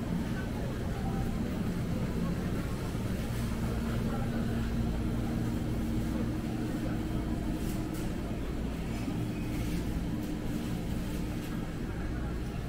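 Supermarket ambience: the steady, low droning hum of open refrigerated display cases, with faint voices of shoppers in the background.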